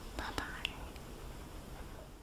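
Faint breathy mouth and voice sounds from a person close to the microphone, with a few small sharp clicks in the first second, over low steady room hiss.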